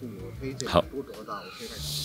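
A man speaking Burmese in a low voice, with a short hiss near the end.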